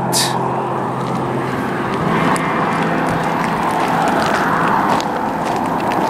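Road traffic: a car driving past on the highway, an even rush of tyre and engine noise that swells in the middle and eases off toward the end.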